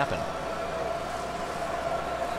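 Glass marbles rolling round a looping plastic marble-run track, a steady rolling noise with a constant hum-like tone under it.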